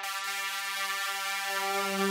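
Reveal Sound Spire software synthesizer playing a sequence-type preset: one held, bright note rich in overtones. About three-quarters of the way through, a deeper layer swells in underneath.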